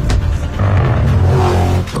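Dodge Challenger engine idling: a low, steady sound that gets louder about half a second in.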